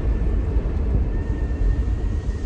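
Steady low rumble of a car on the move: road and engine noise heard from inside the cabin.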